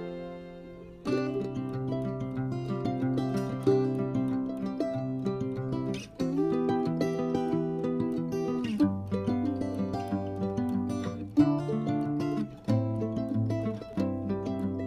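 Instrumental background music on plucked strings, moving to a new chord every few seconds.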